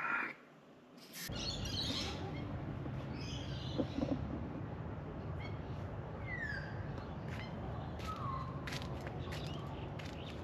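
Birds calling outdoors: scattered short chirps, then two short falling whistled notes a little past halfway, over a steady low background rumble. A few faint clicks are heard near the end.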